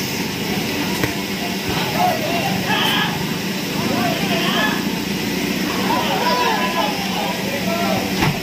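Steady machine hum from a mechanical bull ride's equipment as the bull turns with a rider on it, with people's voices calling out and talking over it.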